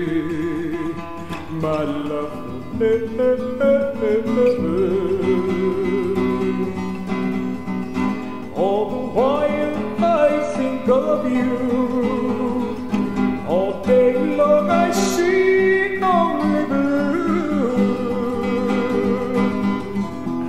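Acoustic guitar playing fingerpicked passages, with ringing plucked notes and runs throughout.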